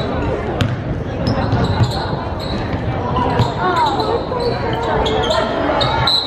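Basketball dribbled on a hardwood gym floor, with shouts and chatter of players and spectators ringing around a large gym.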